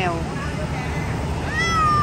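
Persian cat giving one long meow near the end, over a steady low background rumble.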